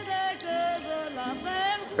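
A singing voice holding long, slightly wavering notes, as background music.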